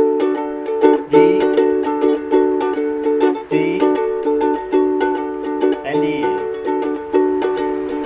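Ukulele strummed in a steady rhythm, cycling through the chords Em, C, G and D and changing chord about every two and a half seconds.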